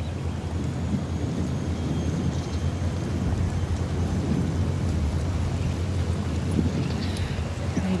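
Steady low rumble of wind on an outdoor microphone, with a faint hiss over it.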